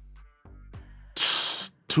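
A man's loud hiss through the teeth, about half a second long, a little past the middle, during a thinking pause in conversation.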